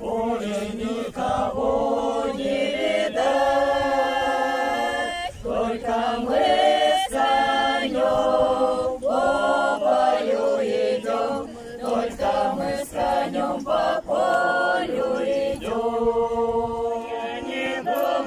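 Russian folk choir of mainly women's voices singing a folk song together, in long held phrases with short pauses for breath between them.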